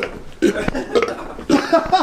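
A man burping: a few short, deep belches in a row.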